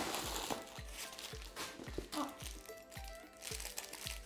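Packing paper crinkling and rustling as it is pulled out of a handbag, loudest in the first half second, over background music with a steady beat.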